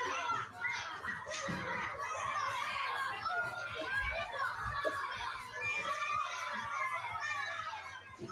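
A classroom full of young children talking and calling out all at once, many high voices overlapping without a break.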